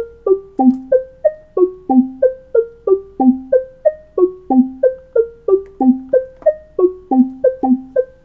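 Eurorack modular synthesizer playing a fast, even sequence of short plucky notes, about three a second. Each note opens with a quick downward pitch blip and decays fast, and the pitches step around a small repeating pattern.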